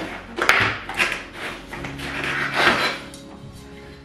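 Cardboard box and packaging being handled: several short scrapes and rustles as a cookware lid is lifted out of its box, with soft background music.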